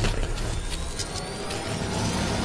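Sound design for an animated logo intro: a steady rushing noise over a low rumble, with a faint rising whine and a few soft clicks.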